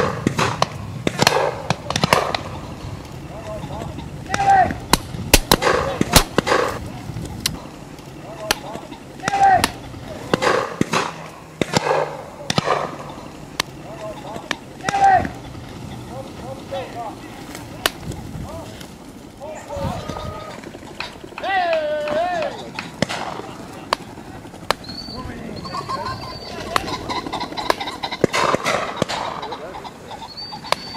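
Beaters calling out in short, repeated cries while driving pheasants out of cover, with sharp knocks and clatters among them through the first half.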